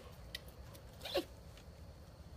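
Faint steady background with one short sharp click, then two quiet spoken words.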